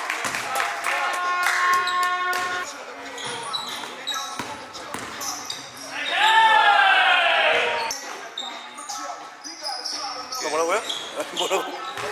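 Live pickup basketball on a hardwood gym court: the ball bouncing, sneakers squeaking and players shouting, with a loud shout about six seconds in.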